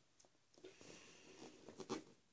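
Faint handling of a rubber balloon: a scratchy rubbing sound for about a second, then a few quick clicks near the end.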